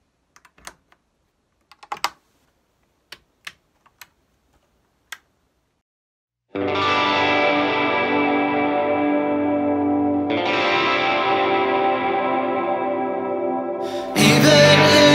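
A few sharp clicks from amplifier knobs and switches being set, then a Fender Jazzmaster electric guitar through the amp strikes a chord about six and a half seconds in and lets it ring. The chord slowly fades and is struck again about four seconds later.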